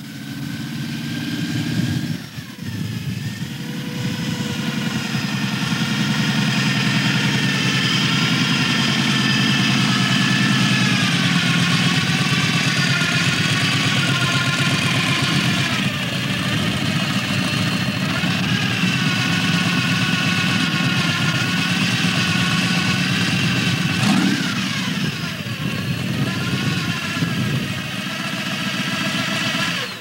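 T-bucket hot rod's V8 engine running through open chrome headers, idling steadily with a few short throttle blips that raise and drop its pitch.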